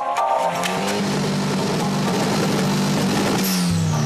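Air-cooled flat-four engine of a VW Beetle revved up in the first half-second and held at high revs, then dropping back near the end.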